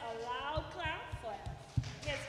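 A person's voice, pitched and wavering, over a run of dull low thumps about three a second; the strongest thump comes near the end.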